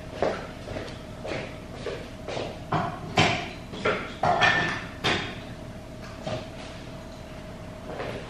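Clicks and knocks of kitchen things being handled off-camera: about a dozen sharp strikes, the loudest a few seconds in, over a faint steady hum.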